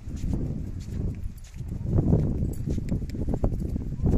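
Footsteps on a paved path, irregular taps over a low rumble that grows a little louder about halfway through.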